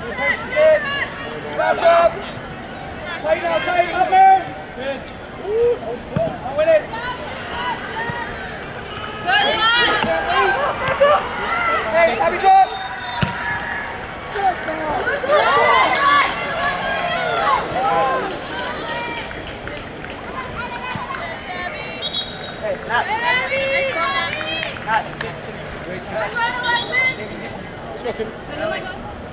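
Voices shouting calls on a soccer field in repeated bursts with short pauses, over faint background chatter.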